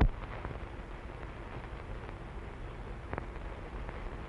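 Steady hiss and faint crackle of an old newsreel film soundtrack between segments, with a few small clicks, one about three seconds in.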